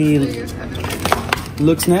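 A few sharp crinkles and clicks of a foil sachet and plastic packaging being handled, about a second in.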